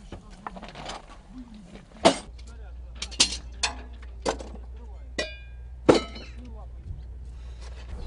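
A series of about seven sharp metallic clinks and knocks, the loudest about two seconds in and near six seconds, one with a brief metallic ring, over a low steady rumble that starts about two seconds in.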